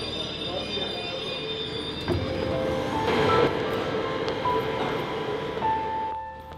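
Metro train car running, heard from inside: a steady rumble with several high, steady whining tones, a sharp clunk about two seconds in and a louder swell a second later.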